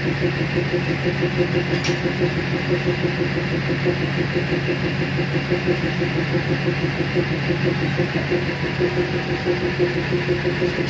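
Locomotive's diesel engine idling steadily with an even, rapid pulse while the train stands stopped.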